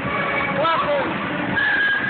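Children's voices and chatter from a busy play area. One child's voice rises and falls briefly just over half a second in, and a high, held squeal sounds near the end.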